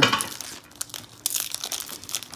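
Foil wrapper of a Panini Contenders football card pack being torn open and crinkled by hand: a run of sharp crackles that gets denser in the second half.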